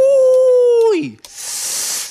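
A man's voice holding one long steady note into a handheld microphone for about a second, sliding down in pitch as it ends, followed by a loud hiss of breath or a 'shh' into the microphone.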